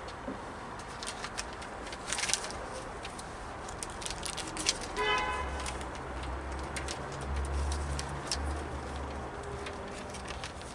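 Paper rustling and small knocks as sheets of music are sorted on a music stand. A low, repeated cooing runs through the second half.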